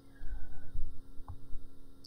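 Steady electrical mains hum from the recording chain, with an uneven low rumble underneath and a faint click a little past the middle.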